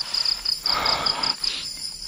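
Crickets chirping at night in a steady, high, pulsing trill of about five pulses a second. A short rustling noise comes in the middle.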